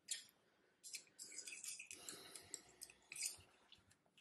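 Faint clicks and soft rustling as the drive band is shifted onto a different whorl of a wooden spinning wheel's flyer, with small handling knocks scattered through.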